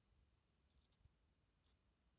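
Near silence, broken by a few faint, short, high-pitched clicks a little before the middle and one slightly louder click near the end.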